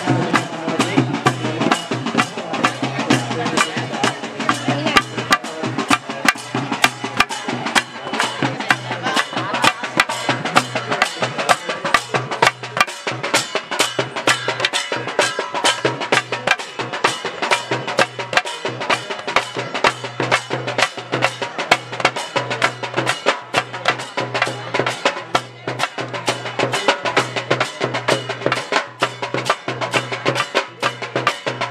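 Percussion-led procession music: a fast, even stream of sharp drum and stick strikes with a steady low tone sounding underneath.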